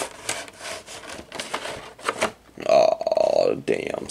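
A clear plastic card case scraping and rubbing against a cardboard box as it is worked out by hand. A brief pitched, buzzy squeak comes about three seconds in.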